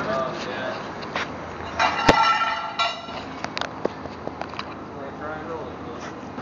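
Scattered knocks and clanks of work on a stripped-down car, with a short ringing metallic tone about two seconds in and faint voices in the background.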